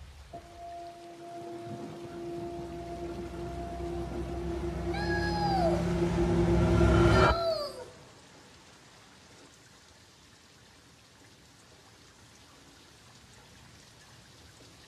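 Trailer score: a steady held drone over a low rumble that swells louder, with short downward-sliding wailing notes near its peak, then cuts off abruptly about seven seconds in. Faint steady rain is left after the cut.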